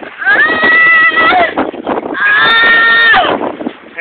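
A woman's two long, high-pitched squealing cries, each about a second, held on one pitch and then dropping at the end.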